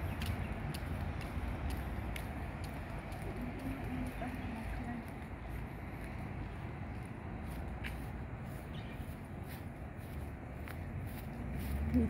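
City street ambience: a steady low hum of distant traffic with scattered faint ticks.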